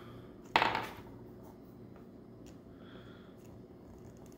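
Hard plastic action figure being handled as its head is worked on its ball joint: one sudden, noisy scrape or pop about half a second in, then a few faint plastic clicks.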